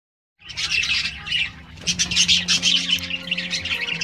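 A flock of budgerigars chattering and chirping rapidly and continuously. It starts about half a second in, with a faint steady low hum underneath.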